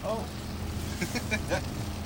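Tow boat's inboard engine idling with a steady low hum.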